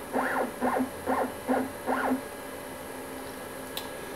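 Mill table's stepper motor jogging in a series of short moves, each a quick whine that rises and falls in pitch, about two to three a second. The moves stop about two seconds in, leaving a quiet hum.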